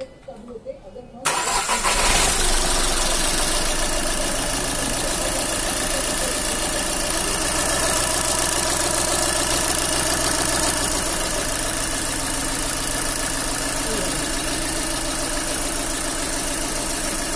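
Volkswagen Polo engine starting about a second in and settling into a steady idle, its first run after a new timing belt and water pump were fitted.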